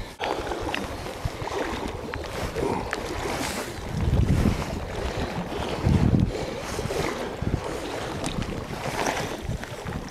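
Steady rush of river water with wind buffeting the microphone in low gusts, strongest about four seconds and six seconds in.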